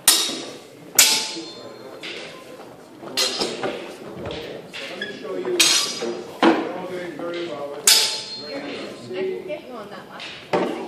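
Swords striking shields in sword-and-shield sparring: about six sharp cracks and bangs at irregular intervals, each ringing briefly and echoing in a large hall.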